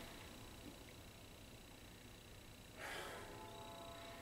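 Near silence, broken a little under three seconds in by one short, soft sniff: a person smelling the aroma of a glass of stout held at the nose.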